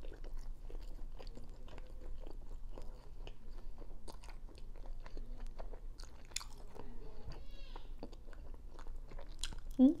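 Close-miked chewing of a chicken wing: soft wet smacking and small crunches of skin and meat, going on steadily.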